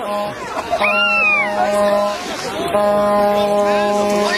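A horn or trumpet blown in three long held blasts on one steady note, with short gaps between them, while people whoop and yell over it.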